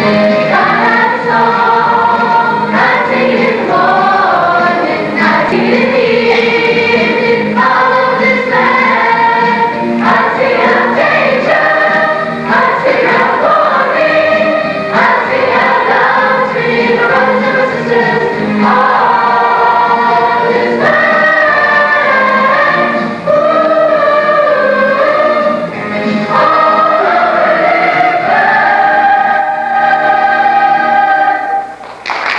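A stage chorus of boys' and girls' voices singing a song together, ending on a long held note near the end.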